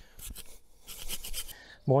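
Hand pruning saw cutting through a hazel stem low at the base of the stool: a run of short, quick back-and-forth strokes, in two spells of about half a second each.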